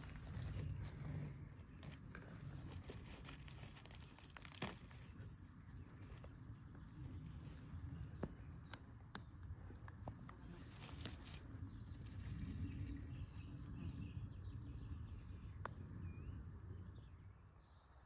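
Faint footsteps through forest leaf litter, with rustling and scattered cracks of twigs underfoot.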